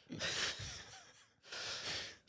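A man's breathy gasp, then a second, shorter breath near the end, with no words.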